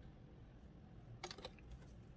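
Near silence: faint room hum, broken about a second in by a quick run of a few small, sharp clicks.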